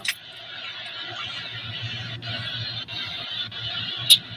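Steady low hum with an even hiss of moving air inside a running car's cabin. A few faint clicks come in the second half.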